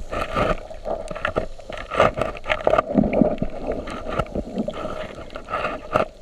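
Muffled underwater sound picked up by a submerged camera: water noise with frequent irregular clicks and knocks.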